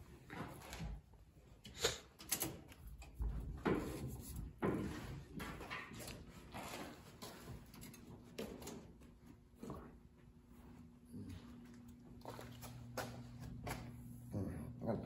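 Scattered light clicks and knocks of handling around a car's cab and engine bay, with a faint steady low hum setting in about eleven seconds in.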